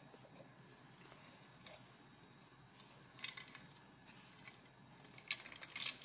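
Faint rustling and a few light taps of popped popcorn being tipped from a glass popcorn-machine bowl into a paper cup, quiet overall with a couple of slightly louder ticks around the middle and near the end.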